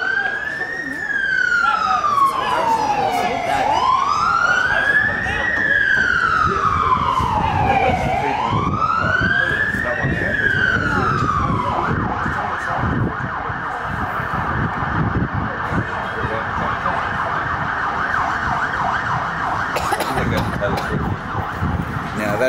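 Emergency vehicle siren on a slow wail, its pitch rising and falling about every four to five seconds. About twelve seconds in it switches to a fast yelp, which stops a couple of seconds before the end.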